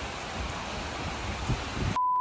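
Steady outdoor background hiss with no speech, and a soft low thump about a second and a half in.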